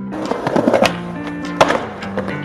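Skateboard wheels rolling, with two sharp clacks of the board about a second apart, over chill guitar background music.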